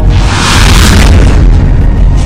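Loud cinematic boom sound effect: a deep rumble under a rushing swell of noise that peaks about a second in, laid over dramatic intro music.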